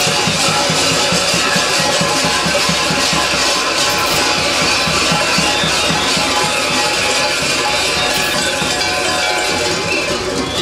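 Bulgarian folk dance music with a tapan drum beating a steady rhythm, mixed with the clanging of the kukeri's large waist bells.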